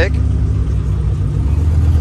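Nissan GT-R's twin-turbo V6 running at low revs as the car rolls slowly away, a steady deep drone; a higher hum in it fades out about halfway.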